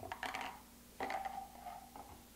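A plastic brew funnel and spray head set down on a countertop: a clatter of light knocks, then a second contact about a second in with a short scraping slide.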